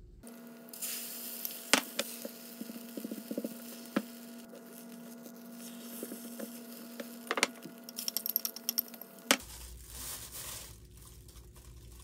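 A rolled omelette being cooked in a rectangular egg pan: a spatula knocks and scrapes against the pan with a few sharp clicks, and the egg sizzles softly over a steady hum. About nine seconds in, this gives way to quieter handling rustle.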